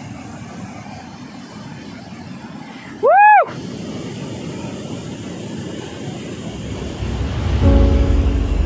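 Steady rushing of a waterfall's white water cascading over rocks. About three seconds in comes a single loud high 'woo' whoop that rises and falls. Background music fades in near the end.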